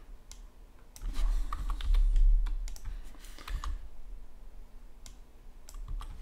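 Computer keyboard being typed on in short, irregular bursts of key taps while text is edited. A dull low thump or rumble comes about one to two seconds in, louder than the typing.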